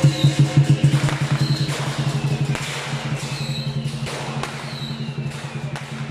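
Lion dance percussion: a big lion drum beating fast, loudest in the first second, with cymbal crashes every second or two.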